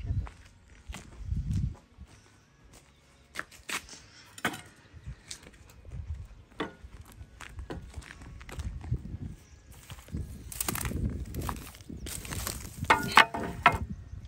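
Footsteps scuffing over dry, gritty dirt with scattered small knocks, and a cluster of louder sharp knocks near the end.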